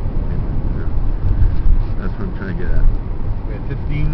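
Steady low road and engine rumble inside the cabin of a moving 2002 Chevrolet Impala, with faint voices.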